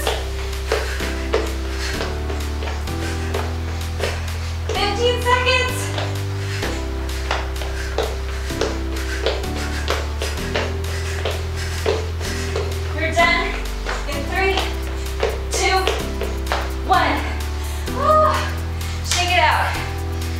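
Upbeat dance-style background music with a steady beat and a bass line that changes note about once a second, with short snatches of voice over it.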